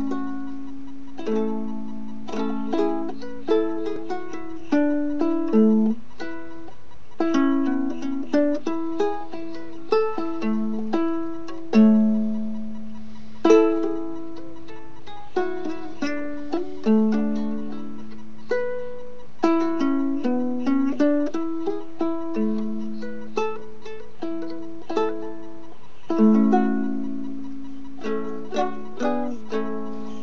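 Harmony concert-size ukulele played solo, strummed chords and picked melody notes in a steady rhythm, a tune played without singing. Its cracked side has been repaired with a cleat from the inside, and it has a very nice ukulele sound.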